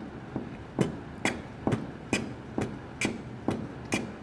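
An improvised kick-and-snare beat: evenly spaced percussive hits, a little over two a second, marking out the rhythmic skeleton of a song at about 120 BPM.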